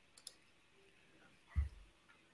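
Two faint quick clicks just after the start, then a short, soft low thump about one and a half seconds in.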